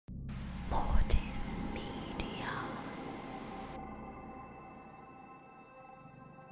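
Logo intro sound design: a wash of static hiss with whispering and two heavy low hits about a second in. The static cuts off shortly before four seconds, leaving a ringing drone of steady tones that slowly fades.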